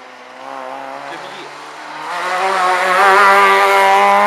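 Rally car engine on a tarmac stage, approaching and growing louder from about two seconds in, its note held fairly steady and loudest near the end.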